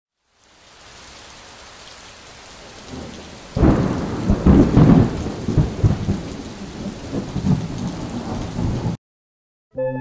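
Rain and thunder: steady rain fades in, then loud rolling thunder joins a little over a third of the way in, and the whole storm cuts off suddenly near the end.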